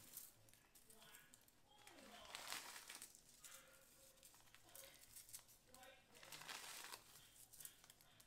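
Faint, irregular crinkling of a plastic pouch and disposable gloves as dried rose petals are picked out by hand.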